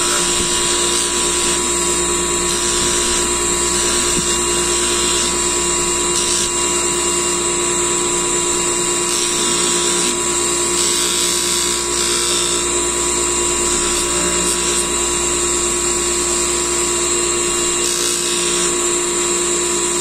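Electric bench polishing motor running steadily with a small steel gun part pressed against its polishing wheel, a constant whine held at several fixed pitches. This is the polishing of the steel ahead of bluing.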